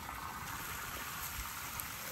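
Steady hiss of water running from a garden hose.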